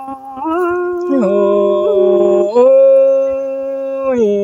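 One voice singing slow, drawn-out notes in a traditional unaccompanied style, each pitch held steady for a second or more. A short slide leads down to a lower note about a second in, and the voice rises back to a higher note at about two and a half seconds.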